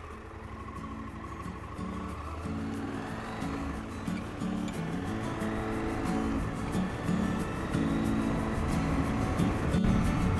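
Background music with held, stepping notes that gradually grows louder, over a motorcycle's engine as the bike rides off.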